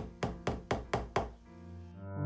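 A hammer driving nails through the inside of a leather shoe into its wooden heel: six quick strikes, about four a second, over soft background music.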